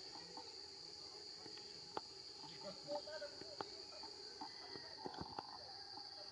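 Faint, steady high-pitched drone of an insect chorus, with a few scattered soft clicks and ticks.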